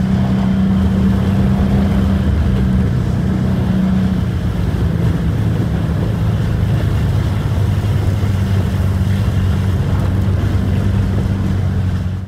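Subaru WRX's turbocharged FA20 flat-four engine heard from inside the cabin while lapping on ice, over steady tyre and road noise from studless winter tyres. The engine note drops to a lower pitch about four to five seconds in as the car slows.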